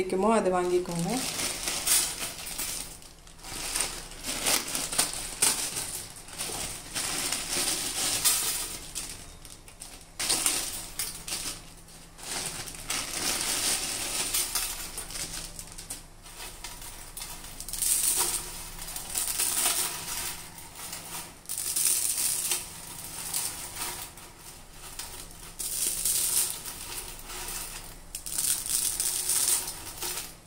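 Plastic packets of dried instant noodles crinkling as they are handled and emptied, with dry noodles rustling and clinking on a steel tray, in uneven bursts.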